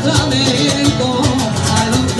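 Live rumba: a woman singing into a microphone over strummed acoustic guitar, with a steady, driving strummed rhythm.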